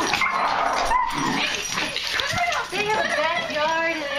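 Excited pet dogs whimpering and yipping in a run of short high whines, mixed with people's voices and laughter.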